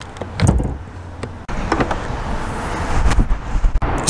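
A 2023 Ram 1500's hood release lever is pulled, and the hood latch lets go with a clunk about half a second in. A series of clicks and knocks follows over steady outdoor noise as the hood is opened.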